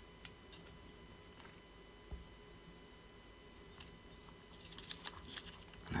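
Small clear plastic parts bags being handled by hand: faint, scattered light clicks and crinkles, growing busier in the last second or so.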